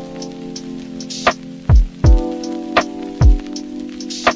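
Background music: held synth chords that change about halfway through, over a deep kick drum that hits in pairs and light percussion.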